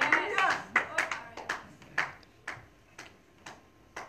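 Scattered hand claps, about two a second, thinning out and growing fainter, with a few murmured voices at the start.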